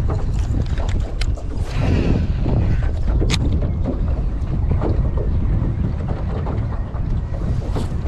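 Wind buffeting the microphone, a steady low rumble, with two short sharp clicks about one and three seconds in.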